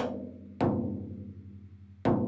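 Drumstick tapping the top head of a 16-inch floor tom near a tension rod: one tap right at the start and another about half a second in, each ringing out with a decaying low tone. The taps check the pitch at one lug while the head is tuned lug by lug to an even tension.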